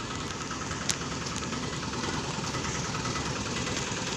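Street traffic noise with a vehicle engine running steadily, and a short sharp click about a second in.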